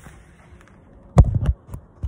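Phone handling noise: a short cluster of sharp knocks and a thump about a second in, as the phone is set down on the ground.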